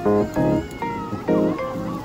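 Background music: strummed plucked-string chords in a steady rhythm, with a high gliding melody line over them.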